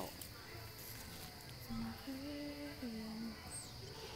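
A person softly singing or humming a few long held notes, about halfway in, over a faint steady high hiss.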